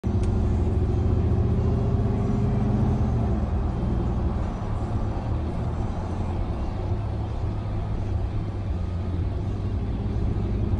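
Vehicle engine and road noise heard inside the cabin while driving, a steady low hum that eases into a rougher, slightly quieter rumble after about three seconds. A short click right at the start.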